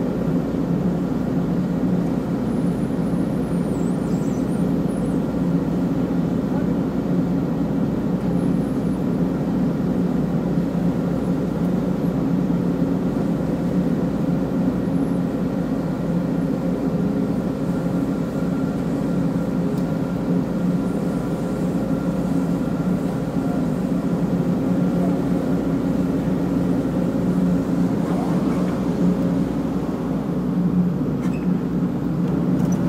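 Excavator's diesel engine running at a steady speed, heard from inside the operator's cab.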